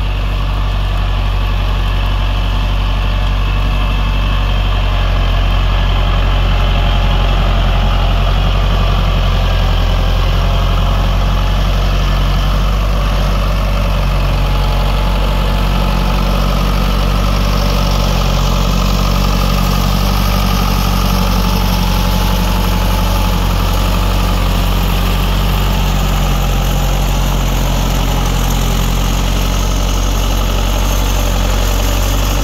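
Lamborghini 874-90 tractor's diesel engine running steadily under load as it pulls a plough through wet, heavy soil.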